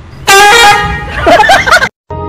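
A loud human voice: a long, steady held shout, then rapidly wavering, laugh-like sounds, cut off abruptly just before the end.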